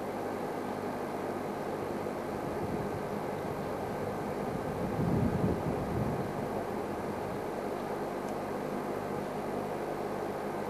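Steady low engine hum under a background hiss, swelling louder for about a second around the middle.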